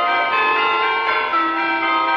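Church bells pealing for a wedding, several bells struck one after another, their tones ringing on and overlapping.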